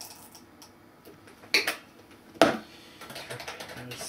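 Typing on a computer keyboard: scattered key clicks, two louder knocks in the middle, then a quick run of keystrokes near the end.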